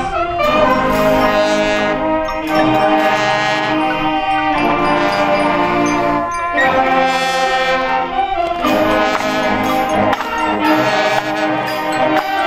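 Marching band playing, its brass section sounding held chords in phrases of about two seconds with short breaks between them.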